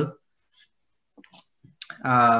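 A short pause in a man's speech: a faint breath, then a few soft clicks, before his voice starts again near the end.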